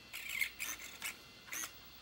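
Steering servo of a FLYHAL FC 650 1:14 scale RC car whirring in four short bursts as the front wheels are turned back and forth, each a brief high whine that rises and falls.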